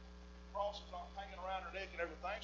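Steady low electrical hum, with a man's speaking voice starting about half a second in.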